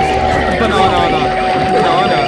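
Several cartoon videos' soundtracks playing over one another: one long held tone, sliding slowly down in pitch, over a jumble of cartoon voices.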